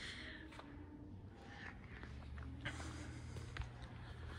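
Quiet showroom room tone with a steady low hum, a few faint footsteps and soft clicks.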